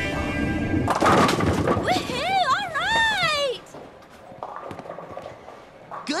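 A bowling ball rolling down the lane with a steady low rumble, then pins crashing about a second in, followed by a high voice whooping with its pitch swinging up and down, over music.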